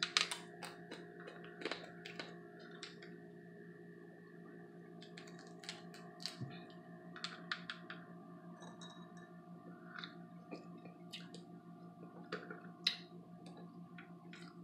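Close-up eating sounds of crab legs being picked and eaten: irregular sharp clicks and cracks of shell and mouth, over a steady low hum.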